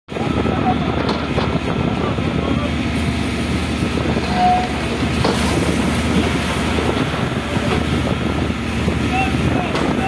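Steady din of a diesel engine running and a fire hose spraying water, with people's voices over it.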